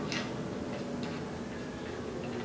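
A few light metal clicks and ticks as a bicycle's handlebar and stem clamp are handled and adjusted, the sharpest just after the start and another about a second in, over a steady low hum.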